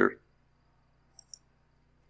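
Two faint, quick clicks of a computer mouse a little over a second in, over a low steady hum.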